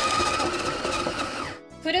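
Electric shaved-ice machine running, its motor whirring steadily as it shaves ice into fine snow. The sound cuts off suddenly about one and a half seconds in.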